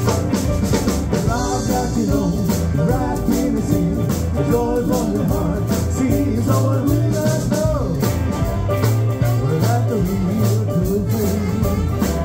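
Rock and roll band playing live at a steady loud level: upright double bass, electric piano, electric guitar, saxophone and drum kit.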